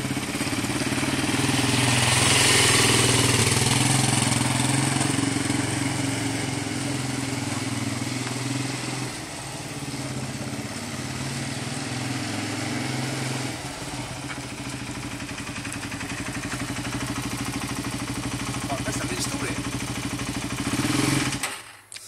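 Suzuki LTZ400 quad bike's single-cylinder four-stroke engine running at low revs as it rides slowly, its level rising and falling a little. It cuts out abruptly just before the end, stalled in gear.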